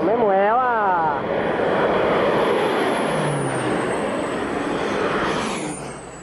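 Single-engine crop-spraying plane flying low overhead, its engine and propeller giving a steady, loud noise whose pitch drops about midway as it passes, then fading near the end.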